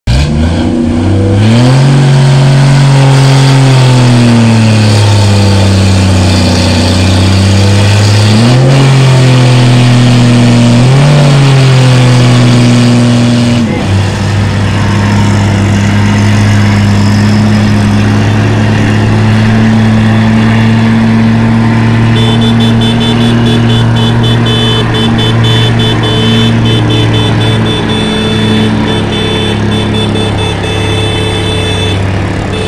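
Diesel engines of heavily loaded cargo trucks labouring up a steep grade. For the first half the engine note rises and falls several times as the truck pulls; about fourteen seconds in it gives way to a steady, strained drone of a truck climbing under heavy load, with a high steady whine joining in about two-thirds of the way through.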